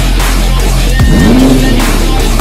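Hip-hop background music with heavy sliding bass notes. About a second in, a single sweep rises and levels off.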